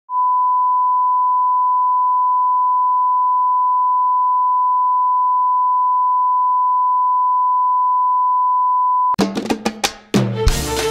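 A steady, unwavering test tone, a single pure beep held at one pitch and level for about nine seconds. It cuts off and the song's music begins with a quick run of sharp drum hits.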